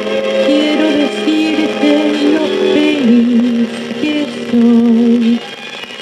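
A Spanish-language pop ballad playing from a 7-inch vinyl single on a record player, in a passage between sung lines: a melody of held notes over a steady accompaniment.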